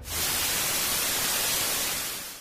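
A steady hiss of white noise like static, a transition sound effect, cutting in suddenly and easing off slightly near the end.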